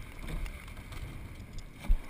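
A rowing boat moving through the water, heard as a steady low rush of water and wind on the boat-mounted microphone, with one short low thump near the end.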